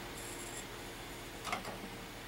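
Quiet room tone with a low steady hum, and a couple of light clicks about one and a half seconds in from a stylus touching a terracotta pot as melted crayon wax is dabbed on.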